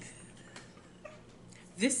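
Quiet stretch with faint stifled laughter from a boy, then a woman starts speaking near the end.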